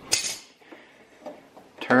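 A brief metallic scrape and clink right at the start, then a few faint clicks, as a John Deere Easy Change oil filter canister is twisted loose by hand.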